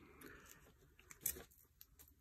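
Quiet handling of craft wire and small pliers: faint rustling, with one brief, louder rustle or click about a second and a quarter in.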